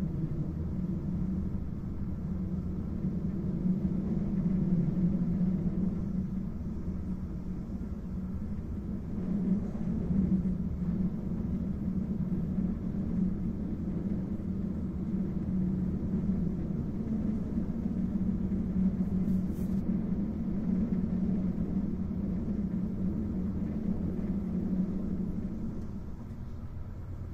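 Steady low rumble of an InterCity passenger coach running at speed, heard from inside the carriage: wheels rolling on the rails, swelling slightly a few times.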